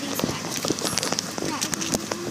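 Crinkling and clicking of plastic blind-bag toy packets being handled close to the microphone, with bits of a girl's voice.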